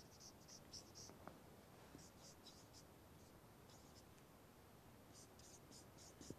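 Marker pen writing on a whiteboard: faint, short squeaky strokes in three clusters, near the start, about two seconds in and near the end, with pauses between.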